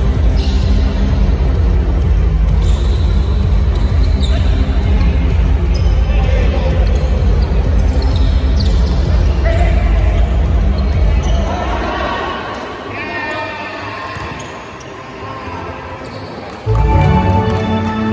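A basketball being dribbled and sneakers squeaking on a gym court during play, with voices calling out. Loud bass-heavy music plays for the first part and drops away about twelve seconds in, and the sound jumps louder again near the end.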